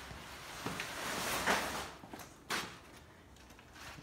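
Rustling and a few light knocks of hands and camera handling close to the microphone, with a sharp knock about two and a half seconds in.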